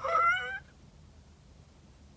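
A woman's short, high-pitched exclamation of amazement, a rising 'ooh', lasting about half a second at the start. It is her reaction to how pigmented the shimmer eyeshadow she has just applied looks.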